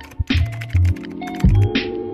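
Upbeat electronic outro music with a steady beat: deep kick-drum thumps about once a second under a run of sharp clicking percussion and held synth tones.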